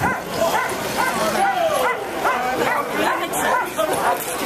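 Many harnessed sled dogs yelping and barking at once, a continuous chorus of overlapping rising and falling yips, with crowd voices underneath.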